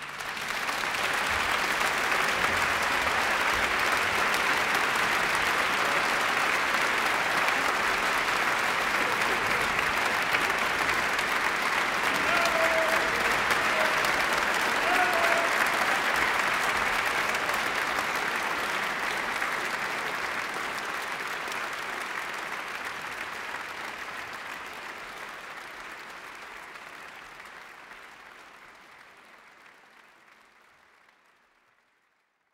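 Audience applauding a live operetta performance, a dense steady clapping that fades out gradually over the second half.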